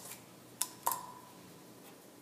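Two light clicks about a third of a second apart from a plastic Goya Adobo seasoning shaker as it is shaken over raw chicken pieces in a plastic container. The second click carries a brief ringing tone.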